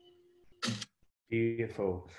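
A man's voice begins speaking about a second and a half in, after a short sharp noise and a moment of near silence; the last held note of a sung guitar song fades out at the very start.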